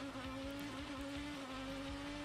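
A faint, steady buzzing engine drone holding one pitch, from IndyCar race footage.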